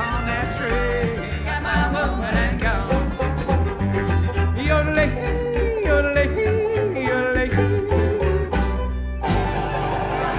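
Live bluegrass band playing without vocals: fiddle, banjo, mandolin, acoustic guitar and upright bass, with a steady bass pulse under a bending melody line. The sound changes abruptly about nine seconds in.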